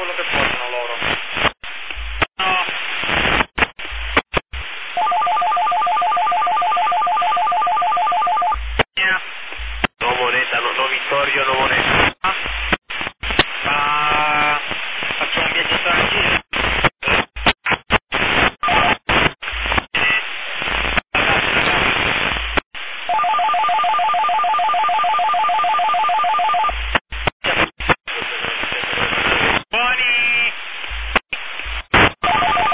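Two-way voice traffic received on a PMR446 walkie-talkie, narrow and choppy, with the squelch cutting the signal in and out many times. Twice, about five seconds in and again past the middle, a two-note warbling ringing tone is sent for about four seconds.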